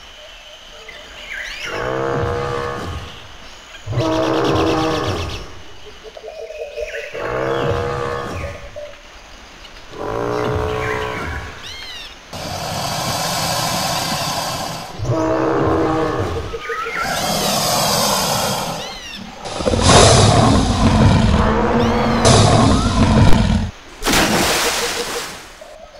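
Dinosaur roar sound effects: a series of growling roars, each a second or two long, about four in the first half, then longer and harsher roars building to the loudest, longest one near the end. Faint bird chirps sit in the gaps.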